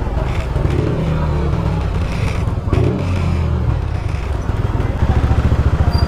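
Motorcycle engine running at low speed as the bike rolls along slowly, a continuous low rumble that gets louder and more evenly pulsing about five seconds in.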